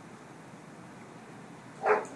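Mostly quiet, then a single short dog bark near the end.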